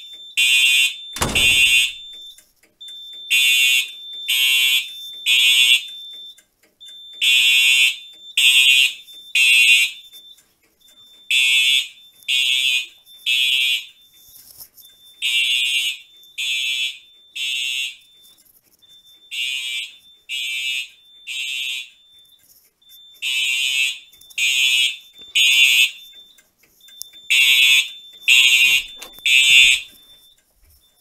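Fire alarm horns sounding the temporal-three evacuation signal: three short blasts, a pause, then three again, repeating about every four seconds, signalling the panel in alarm after a pull station was pulled. A heavy thump comes about a second in.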